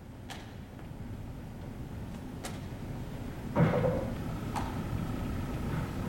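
Baseballs smacking into a catcher's mitt, three sharp pops about two seconds apart, with a duller thud between the second and third.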